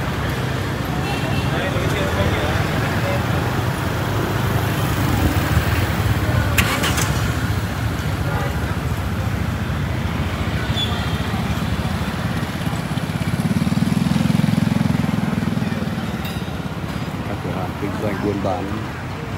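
City street ambience: a steady rumble of motorbike and car traffic with people's voices chattering. About fourteen seconds in, one vehicle passes close and the sound swells, then fades.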